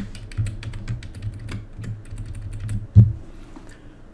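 Typing on a computer keyboard: a quick run of keystrokes, then one louder thump about three seconds in, with only a few keystrokes after it.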